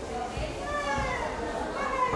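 Indistinct background voices with high-pitched, drawn-out calls that rise and fall, nobody's words clear.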